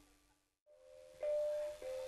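Javanese gamelan: a held ringing note dies away into a brief silence, then bronze metallophone notes are struck and ring on, one about a second in and another near the end.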